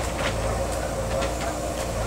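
Excavator's diesel engine running steadily under load, with a steady whine and scattered short knocks and clanks from the digging.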